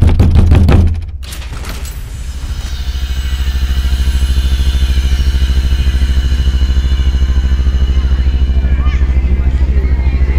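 A sudden loud crash, then a loud, steady, low rumbling drone that swells over the next few seconds and holds with a fast, even flutter.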